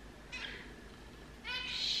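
Kitten meowing twice: a short faint meow about a third of a second in, then a longer, louder high-pitched meow near the end.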